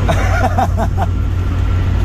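Steady low road and engine rumble heard inside a moving vehicle's cabin, with a man's laughter in the first second.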